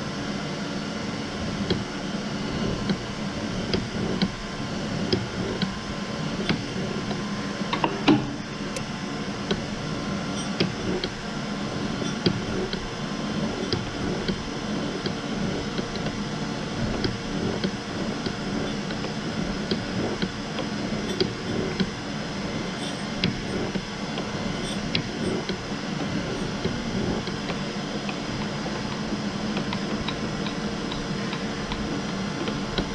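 Surface grinder running steadily, its wheel and spindle humming while the table carries a steel part under the wheel, with scattered light ticks and one sharp click about eight seconds in.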